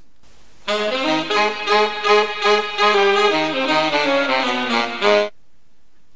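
A short recorded tune played on horns, a melody of quick, evenly spaced notes, starting just under a second in and cutting off suddenly about five seconds in.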